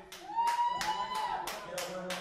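A few people clapping, about four claps a second, with a voice calling out over the clapping in the first second.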